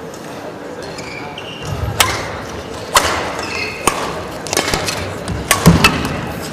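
Badminton rally: racket strings striking a shuttlecock about once a second, the hits coming closer together near the end, with short squeaks of shoes on the court floor.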